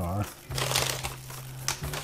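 Crumpled packing wrap crinkling as it is pulled off a model railroad boxcar during unwrapping, with a sharp crackle about half a second in and a small click near the end.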